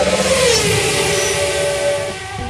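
Car engine sound effect: an engine note drops in pitch in the first second and then holds steady, over a loud rushing noise.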